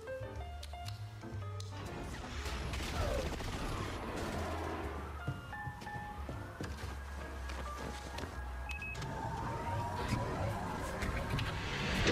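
Soundtrack of an animated film clip playing from a computer: music with a low bass line running throughout, mixed with action sound effects.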